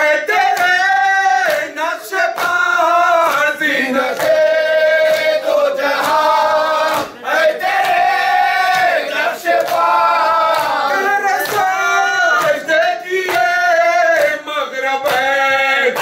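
Men chanting a noha (Urdu mourning lament) together without instruments, in long held, wavering notes with short breaks between lines. Sharp slaps sound at intervals throughout, from matam, the mourners' chest-beating.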